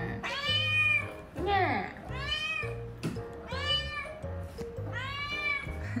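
A kitten meowing four times, high-pitched meows about a second and a half apart, each rising and then falling in pitch.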